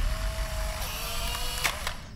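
Trailer sound design: a low rumbling drone under a thin steady tone that drops in pitch about a second in, with two sharp clicks near the end.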